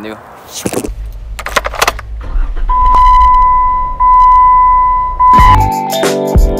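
Keys jangling with handling clicks and a low rumble, then a loud steady electronic beep tone held for about two and a half seconds. Music with a beat starts near the end.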